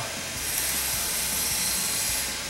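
Steady hissing background noise that gets a little louder about half a second in.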